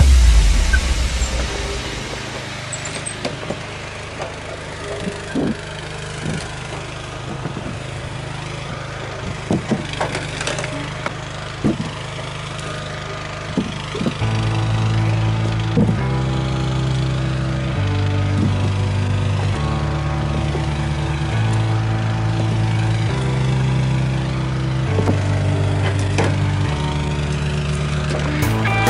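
Log splitter running with a steady low hum, with several sharp knocks of split wood being handled. About halfway through, music with a bass line stepping about once a second comes in over it.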